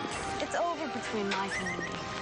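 A horse whinnies once: a call that starts about half a second in, rises, then wavers downward in steps for about a second and a half. Steady background music continues under it.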